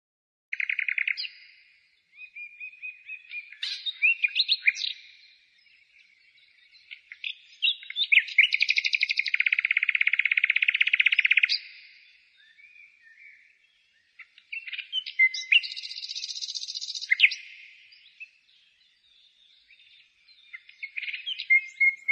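A songbird singing in separate phrases with short pauses between them: quick chirps and whistled notes, with one long rapid trill about eight seconds in.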